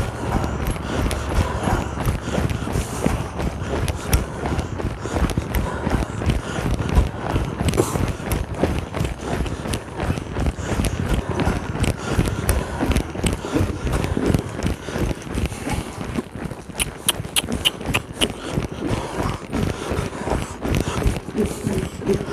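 A horse trotting on soft arena sand, its footfalls giving a steady, rhythmic pattern of dull thuds, picked up close by the rider's microphone. Near the end there are a few sharper, higher clicks.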